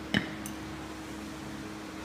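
A single short knock from a loaded barbell's bumper plate being handled, with a faint click just after it, over a steady low hum.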